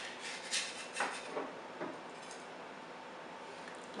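Metal spatula scraping and clicking against a metal baking sheet as a baked biscuit is pried loose: a handful of short scrapes in the first two seconds, then quiet.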